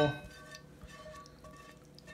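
Faint soft sounds of sautéed pepper strips and olive oil sliding out of a stainless steel pan into a bowl, a silicone spatula scraping them along the pan, with a few small ticks.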